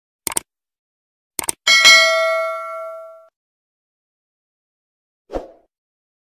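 Subscribe-button sound effect: two pairs of quick mouse clicks, then a bright notification bell ding that rings out for about a second and a half. A short soft thump follows near the end.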